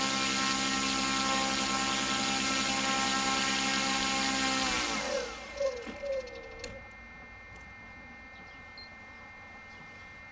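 Model glider's folding electric motor spinning its propeller at steady speed with a whine, then winding down in pitch about five seconds in and stopping, followed by a few light clicks.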